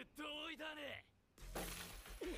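Quiet anime soundtrack: a voice, then a short gap, then a sudden burst of noise with a low rumble about a second and a half in, a crash-like sound effect.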